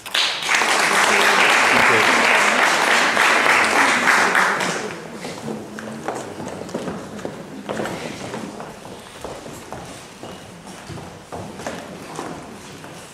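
Audience applause for about five seconds, dying away into scattered clicks of high heels on a wooden stage floor and low voices as the singers take their places.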